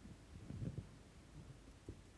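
Faint room tone with a steady low mains hum. Soft low thumps come about half a second in, and a single sharp click comes near the end.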